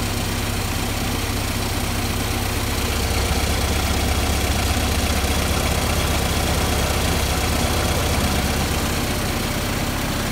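Jeep CJ5 engine idling steadily with a low, even rumble, a little louder from about three seconds in. It is running on freshly fitted spark plugs gapped at 0.030 and a new valve cover gasket.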